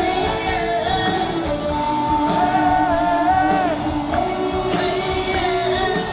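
A live rock band playing: drums, bass and electric guitar, with a long held melody line that bends and wavers in pitch over a steady beat.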